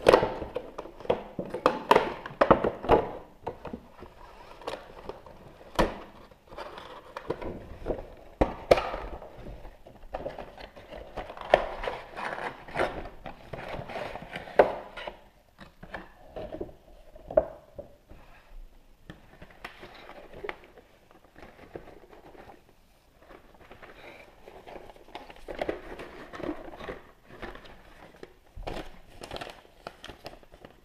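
Cardboard toy box being opened by hand: irregular knocks and taps as the box is handled, with scraping and tearing of cardboard flaps. Paper rustles near the end as the instruction sheet is pulled out.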